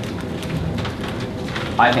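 Sheets of paper rustling and being handled, with small clicks such as laptop keyboard taps; a voice begins to speak near the end.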